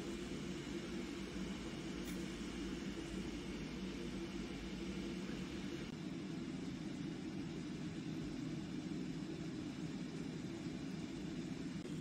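Steady low rumbling room hum with no speech; its deepest part drops away about halfway through.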